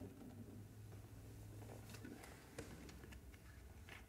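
Near silence over a low steady hum, broken by a few faint clicks and knocks as a water bottle is picked up from the floor.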